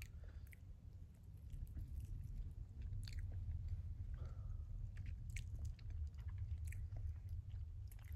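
Close-up chewing of a dried fruit snack, with small mouth clicks every second or so over a steady low hum.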